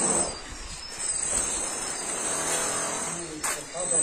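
Faint voices over a steady, high-pitched whine and low background noise.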